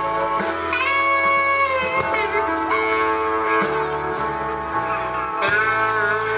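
Live country band playing an instrumental passage of a slow song: electric guitar lead with bent notes over acoustic guitar chords and low bass notes, the chords changing about once a second.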